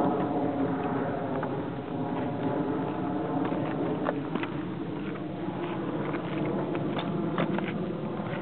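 Steady engine-like drone, even in pitch, with scattered light clicks and taps over it.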